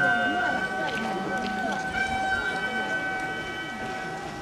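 Gagaku accompaniment for a bugaku dance: a sustained chord of several steady high tones, typical of the shō mouth organ, with a lower part wavering in pitch beneath it.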